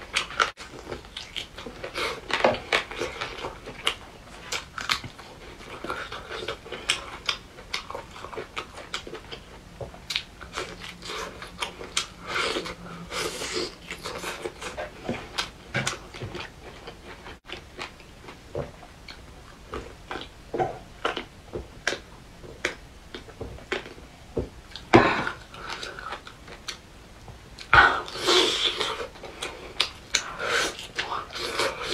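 Chewing and biting of braised pork ribs held to the mouth: a steady run of short, sharp mouth clicks and pops, with a few louder bites near the end.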